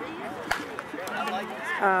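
A single sharp crack of a softball bat hitting a pitched ball about half a second in, over background chatter from players.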